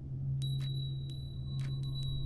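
Sharp ticks, some in quick pairs, and a high bell-like ringing tone struck about half a second in that keeps ringing, over a low steady hum.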